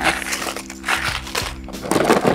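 A clear plastic zip-top bag holding pins and metal rings crinkling as it is handled, in a few short bursts, over steady background music.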